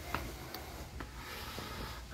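Low, steady background hum of a warehouse store, with a few faint light clicks about half a second apart.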